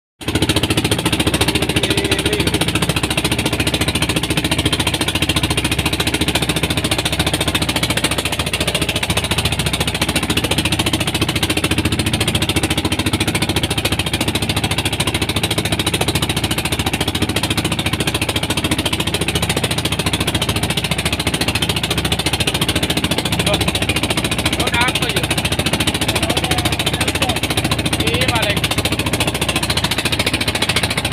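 Engine of a small wooden outrigger fishing boat running steadily under way, a rapid, even chugging.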